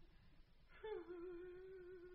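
A single voice hums one long held note, coming in about a second in with a small dip in pitch and then held steady.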